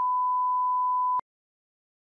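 Broadcast test-card tone: one steady pure beep that cuts off abruptly with a click just over a second in.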